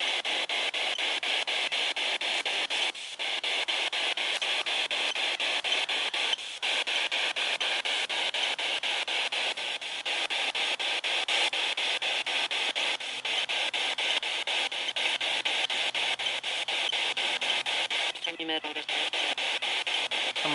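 Spirit box, a radio sweeping rapidly through stations, giving hissing static chopped into quick, even pulses. A brief voice-like snatch of broadcast comes through near the end, the kind of fragment ghost hunters listen to as an answer.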